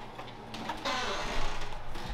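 Rustling and handling noise from a handheld camera being carried and swung around, with a soft swell of noise about a second in.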